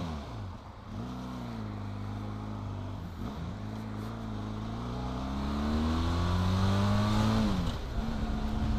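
Benelli TRK 502X motorcycle's parallel-twin engine accelerating away through the gears. Its pitch rises, drops at a gear change about three seconds in, then climbs again louder and drops near the end with the next shift.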